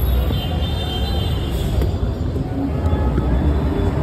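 Steady street traffic noise with a heavy low rumble.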